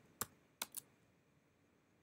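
Three computer keyboard keystrokes within the first second: the last letters of a web address and the Return key.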